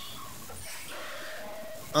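Steady background noise in a pause between spoken lines, with a faint, drawn-out call held from about half a second in until just before the voice returns.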